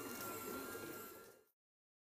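Workshop background noise with a steady high-pitched whine running through it. It fades quickly and cuts to silence about one and a half seconds in.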